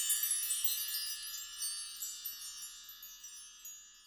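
High tinkling chimes, a shimmer of many bell-like notes that dies away gradually over the few seconds, part of the video's opening music.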